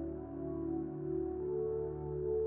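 Slow ambient background music of long held notes that shift in pitch every second or so.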